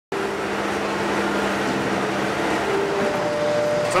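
Bobcat skid-steer loader running, a loud, steady machine noise with a constant hum under it that shifts in tone about three seconds in.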